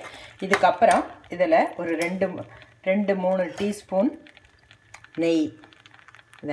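A metal slotted spatula scraping and clinking against a pressure-cooker pan while stirring thick carrot halwa, heard as short scrapes and clicks between spoken phrases.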